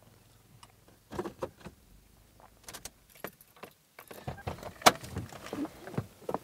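Scattered clicks and rustles of a person moving in a car's driver seat and opening the door to get out, with one sharp latch click about five seconds in.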